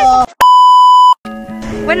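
A single loud, steady electronic bleep tone lasting under a second, cut in sharply between stretches of background music, like an editor's censor bleep.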